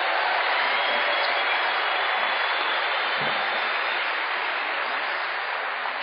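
A large audience applauding steadily, a dense clatter of many hands that eases slightly toward the end.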